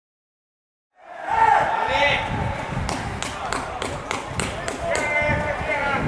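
Silence for about the first second, then people's voices over a low rumble, with a run of sharp knocks about three a second in the middle.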